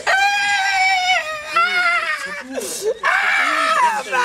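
A person wailing and crying in a high-pitched voice: long drawn-out, wavering cries broken by a sharp gasping breath a little after halfway.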